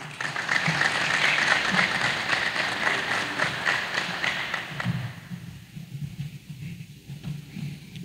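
Audience applauding, a dense patter of many hands clapping that thins out and fades about five seconds in.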